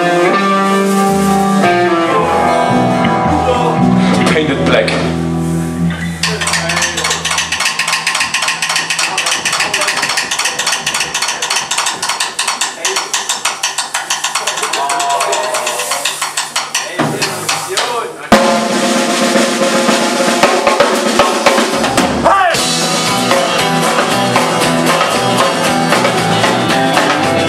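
Live rock band playing loud: guitar and bass chords at first, then a driving drum-kit beat comes in about six seconds in. The band drops back briefly and returns with a loud hit shortly after the middle.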